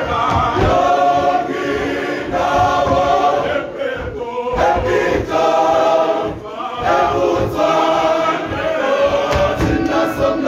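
Male voice choir singing in full harmony, in long held phrases with brief breaths about four seconds in and again a little past six seconds.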